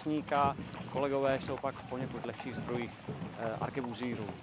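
A man speaking in short phrases, with steady outdoor background noise underneath.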